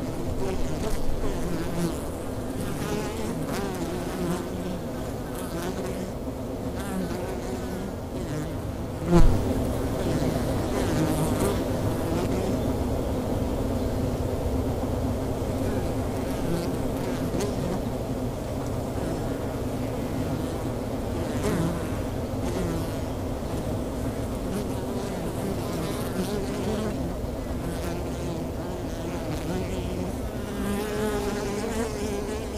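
Honey bees buzzing around wooden hives, a steady hum whose pitch wavers up and down as individual bees fly close by. A single brief thump about nine seconds in.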